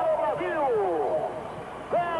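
A raised voice calling out in several long cries, each falling in pitch.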